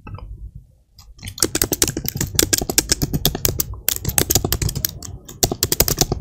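Fast typing on a computer keyboard: a quick, dense run of key clicks that starts about a second in, with a couple of brief pauses.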